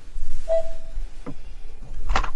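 A steady low mains-type hum on the line, with one short faint tone about half a second in.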